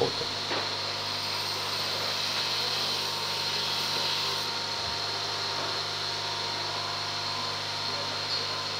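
Steady mechanical hum with a constant hiss and a thin high tone, like a machine or fan running in the background of a workshop. The level stays even throughout, with no distinct knocks or starts and stops.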